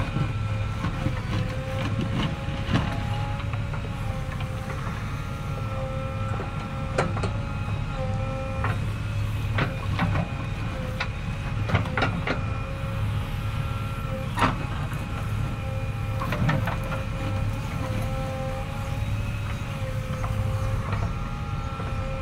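A JCB 3DX backhoe loader's diesel engine running under load with a steady hydraulic whine as the backhoe arm digs. Sharp metallic clanks from the arm and bucket come every couple of seconds.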